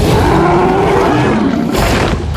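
A creature's deep, wavering roar over a heavy rush of splashing water: the film sound effect of the mosasaur leaping out of the water.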